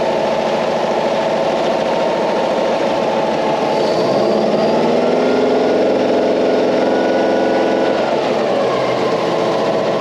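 Panhard AML60 armoured car's air-cooled flat-four petrol engine idling, then revved up about four seconds in, held at higher revs for a few seconds, and let fall back to idle near the end. It is the engine's first run in at least ten years.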